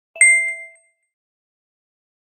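A single bright ding sound effect about a fifth of a second in, a chime of several ringing tones that fades out within about half a second.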